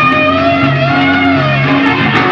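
A 1970s progressive rock band playing live, recorded on an analog cassette tape: electric guitar with sustained, bending notes over bass.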